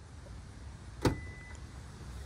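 A single sharp click about a second in, over a faint, steady low background.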